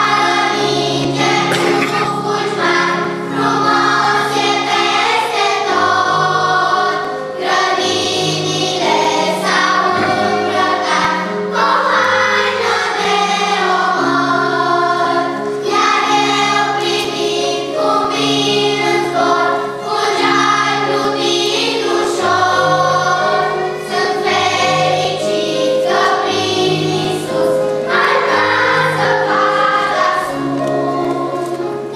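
Children's choir singing a song in unison with instrumental accompaniment, a steady bass line changing note about once a second underneath the voices.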